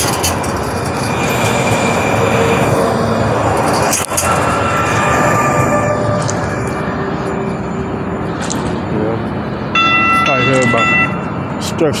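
Light rail train passing close by, a loud rolling rush that fades about halfway through. Near the end a steady high-pitched tone sounds for about a second.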